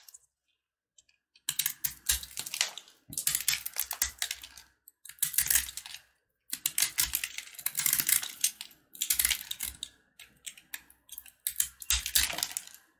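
A snap-off utility knife blade is carving a dry, crumbly block. Each cut gives crisp, crunchy crackling that comes in bursts of one to three seconds with short pauses, starting after about a second and a half of silence.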